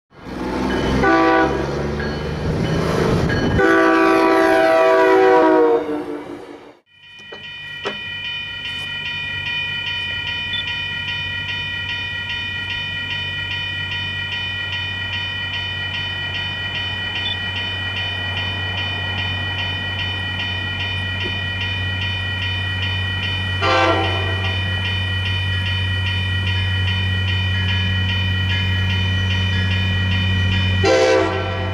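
Diesel locomotive horn sounding a loud chord for about six seconds. After a break, a steady low engine hum under the ringing of grade-crossing bells, with a short horn blast about 24 seconds in.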